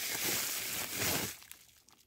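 A rustling noise lasting about a second and a half, then fading.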